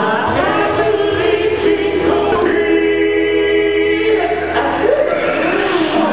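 Recorded rock-opera song played over a hall's sound system: voices singing over music, holding one long note for about a second and a half in the middle.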